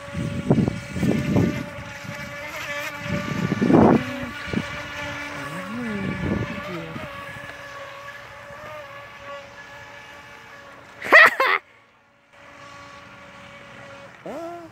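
Small battery-powered radio-controlled boat motor whining steadily as the boat runs across the water, its pitch dipping and rising again about six seconds in. Gusts of wind hit the microphone in the first four seconds, and a short loud burst comes about eleven seconds in, followed by a brief drop to near silence.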